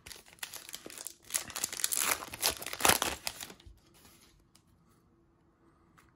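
A baseball card pack's wrapper crinkling and tearing as it is pulled open and off the cards, a dense run of rustles that stops about three and a half seconds in.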